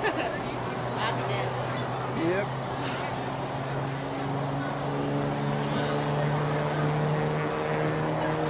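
A steady low motor hum holding one pitch, a little stronger in the second half, with scattered voices of people around it.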